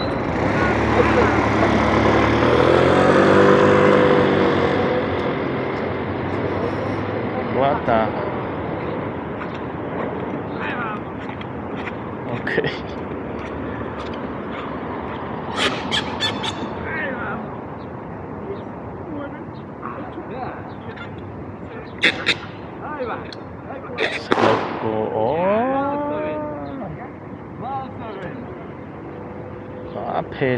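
Street traffic noise at a city intersection, with a person's voice calling out twice and a few sharp clicks.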